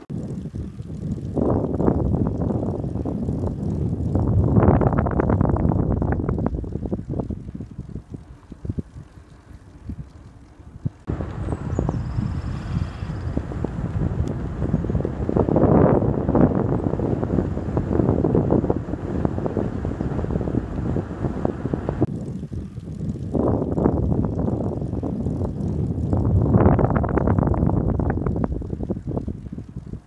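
Wind buffeting the microphone of a camera on a moving bicycle: a rumbling noise that swells and fades in three long surges. The background changes abruptly twice, about a third and two thirds of the way through.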